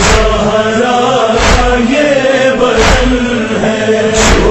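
Noha lament chant: a held vocal drone with a sharp beat about every second and a half, three beats in all.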